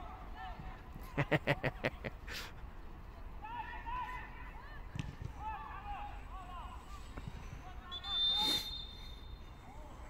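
Players' distant shouts and calls across a football pitch, with a quick run of about seven sharp knocks about a second in and a short, loud burst of noise near the end.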